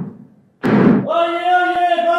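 Heavy, deep knocks about a second apart, each fading out over about half a second, one falling just over half a second in. About a second in, a long, steady held note begins and carries on.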